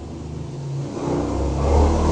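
A low engine drone that grows steadily louder from about a second in.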